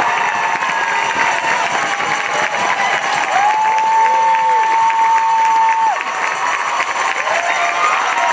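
An audience applauding and cheering, with scattered high shouts and whoops. One voice holds a long, high cry for nearly three seconds around the middle.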